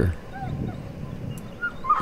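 A dog whimpering: a few short, faint, high whines.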